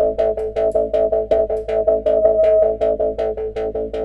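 Sampled djembe hand-drum loop played through a resonant filter: rapid, even drum hits over a steady ringing mid-pitched tone that the high filter resonance draws out of the loop.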